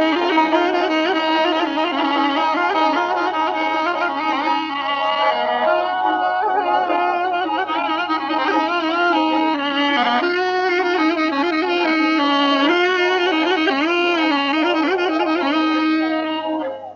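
Traditional Azerbaijani ashiq instrumental music: an ornamented, wavering melody line played continuously, with a faint steady low hum underneath.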